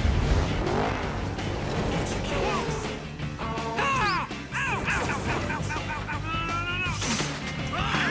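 Animated film trailer soundtrack: music mixed with race-car engine and crash effects, opening on a deep boom, with character voices calling out over it in the second half.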